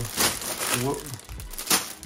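Clear plastic LEGO parts bags crinkling as a hand presses and shifts a pile of them, in several short rustles.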